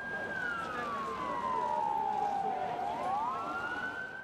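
A siren wailing: its pitch falls slowly for about two and a half seconds, then climbs back up.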